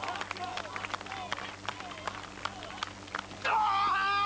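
Javelin run-up with faint scattered background voices and light taps. About three and a half seconds in comes a loud, drawn-out shout held on one pitch as the javelin is thrown.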